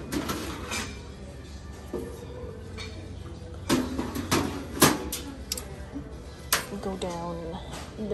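Metal tins knocking and clinking against each other as a stack of vintage Post Grape-Nuts replica tins is lifted off a shelf. There are a few sharp clanks in the middle.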